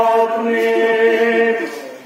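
Noha, the Shia Muharram lament, chanted by male voices in long held notes; the chant fades off about one and a half seconds in.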